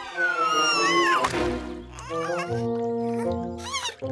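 Cartoon soundtrack: a falling whistle gliding down in pitch over about the first second, then background music with steady held notes and short, squeaky, wavering cartoon-character vocal sounds.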